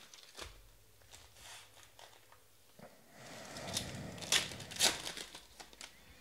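Foil trading-card pack wrapper crinkling and tearing as it is pulled open by hand. Light rustles at first, then a louder stretch of crinkling with a few sharp bursts about three seconds in.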